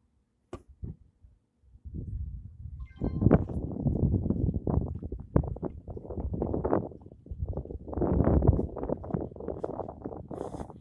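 Irregular rumbling and rustling noise on a handheld phone's microphone while walking, starting about two seconds in, typical of handling and wind on the mic.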